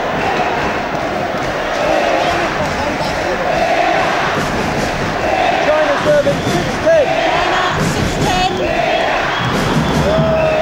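Large crowd in a packed badminton arena shouting and calling continuously, many voices overlapping with single shouts rising above the din. A few sharp knocks sound about eight seconds in.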